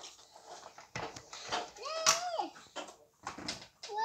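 Large plastic toddler building blocks clicking and knocking as they are pressed and stacked together. About halfway through there is a short rising-and-falling vocal sound.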